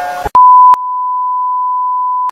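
Steady 1 kHz test-tone beep of the kind played with TV colour bars. It cuts in about a third of a second in, loudest for its first half second, then holds a little softer.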